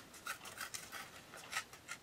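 Watercolor paper being torn by hand: a run of faint, irregular little crackles.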